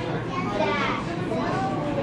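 Indistinct voices of children and adults talking over one another, a steady babble with no single clear speaker.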